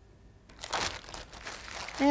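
Plastic wrapping crinkling in short, irregular crackles, starting about half a second in, as fondant is handled.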